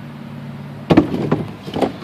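Pieces of dry driftwood knocking together as they are handled in a pile: a sharp knock about a second in, followed by a few lighter clacks. A steady low hum sits underneath before the knocks.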